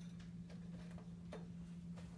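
Faint clicks from hands working a potted bonsai, the clearest about half a second and a second and a half in, over a steady low hum.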